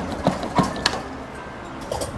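Claw machine in play, its claw lowering onto a boxed prize, with a few sharp clicks in the first second over steady arcade background music.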